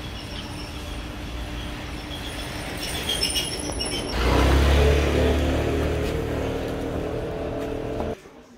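Steady street background noise, then from about four seconds in a motor vehicle engine running close by, a low hum with a steady pitch that cuts off abruptly at the end.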